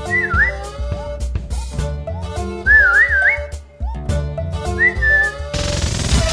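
Background comedy music: a whistled tune gliding up and down over a bouncy bass beat with light percussion, with a short rushing noise near the end.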